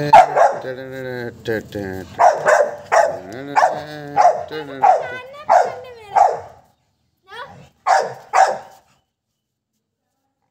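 Pit bull barking repeatedly, about a dozen loud barks roughly half a second apart, breaking off near the end.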